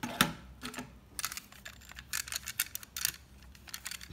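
A quick series of light plastic clicks and rattles from cassettes being handled at an open cassette deck, with one sharper click just after the start.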